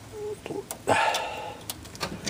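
Vise-grip locking pliers clamped on a rusty sheet-metal flange under a car, clicking and scraping as the metal is bent back down, with a short squeal about a second in.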